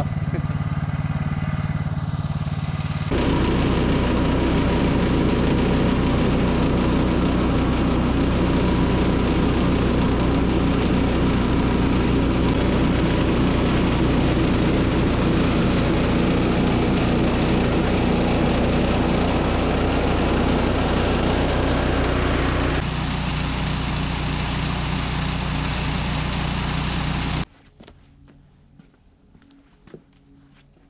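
Woodland Mills HM126 portable bandsaw mill's 14 hp gas engine running, getting louder about three seconds in as the blade saws a board off a cherry log. The blade is one the sawyer says is starting to go dull. The sound eases a little near the end, then stops abruptly.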